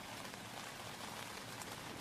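Faint, steady rain falling on the nylon fabric of a tent, heard from inside the tent.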